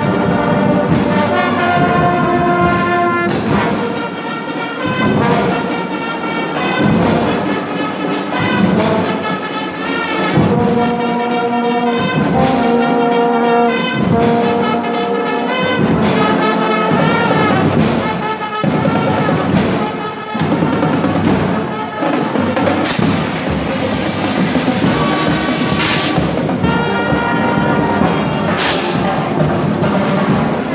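School marching band playing live: a brass section of trumpets, trombones and euphoniums plays held chords over marching drums. A bright, noisy crash lasting about three seconds cuts in about three-quarters of the way through.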